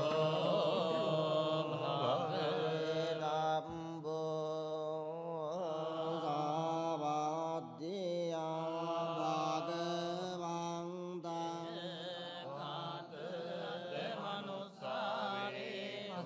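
Buddhist monks chanting together into microphones, in long held notes over a low steady drone of voices, with a few short breaks for breath.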